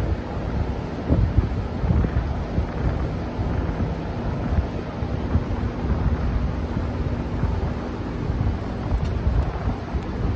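Steady low rumble of moving air buffeting the microphone, with a faint steady hum underneath.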